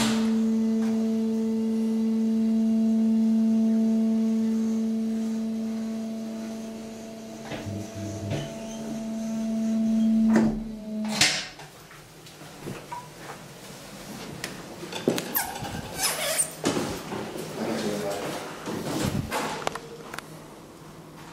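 Hydraulic pump motor of a 1980 KONE platform lift humming steadily while the platform travels. It cuts off with a clunk about eleven seconds in as the lift stops at the floor. Irregular clicks and knocks follow, as the landing door's latch and handle are worked.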